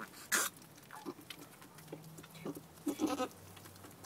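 Mother goat and her newborn kids in straw: a few soft, short bleats, then a louder bleat about three seconds in, with a brief rustle just after the start.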